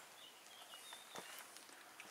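Near silence: faint outdoor background with a few faint, short high chirps and a soft click just over a second in.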